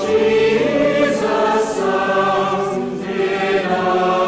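A choir singing, several voices holding long notes together in a slow passage.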